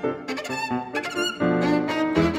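Violin and grand piano playing classical music together, the violin singing with vibrato over the piano. The music grows louder with fuller piano chords about one and a half seconds in.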